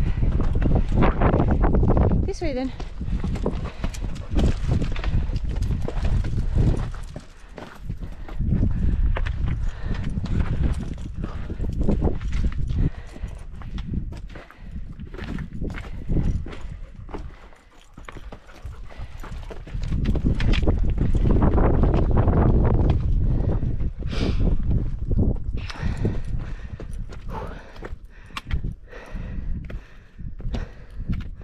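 Wind rumbling on the microphone, with footsteps and trekking-pole clicks on rock as a hiker climbs a rocky path. The wind drops briefly a little past halfway, then picks up again.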